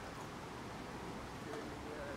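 Quiet steady background noise, with a faint low held tone about one and a half seconds in.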